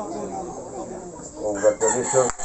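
A rooster crowing, over men's voices; near the end the voices get louder.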